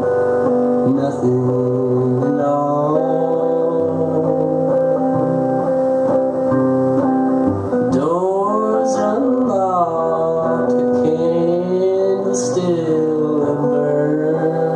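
Solo acoustic guitar strummed and picked under a man singing a slow blues, live. The voice holds long notes, sliding in pitch about eight seconds in and again near the end.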